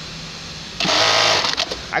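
Electronic bartacking machine sewing a bartack to fasten a belt loop on jeans. A low steady hum is followed, just under a second in, by a loud burst of rapid stitching that lasts about a second.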